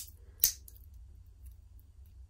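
Stamped stainless steel dive extension on a watch bracelet's clasp being flipped open: two sharp metallic clicks about half a second apart, followed by a few faint ticks.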